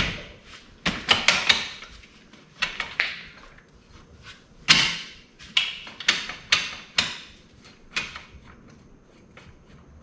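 Metal hand tools and loose parts clinking and clacking: about a dozen sharp, irregular knocks, the loudest about five seconds in.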